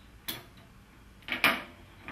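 Small metal clicks of the stove's spanner tool against the brass fuel-line fitting as the screw joint is loosened: one click about a third of a second in, then a louder double click around a second and a half.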